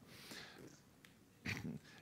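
Quiet room tone during a pause in a talk, with a faint click about a second in. About a second and a half in comes a short breathy vocal noise from the lecturer just before he speaks again.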